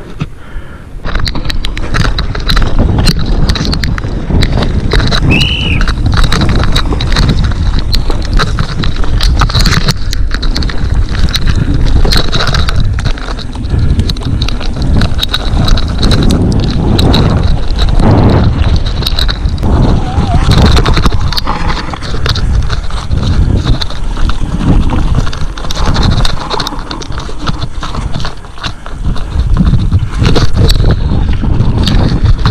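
Mountain bike clattering and rattling at speed over a rough, wet dirt trail, with constant sharp knocks from the wheels and frame over a heavy rumble of wind on the camera microphone.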